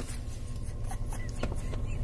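Steady low rumble inside a car cabin, with faint rustling and a few small clicks from hands and clothing moving close to the phone.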